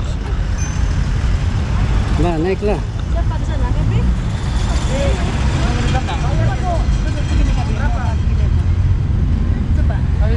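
Wind buffeting an action-camera microphone as a constant, loud low rumble, with people's voices chatting over it.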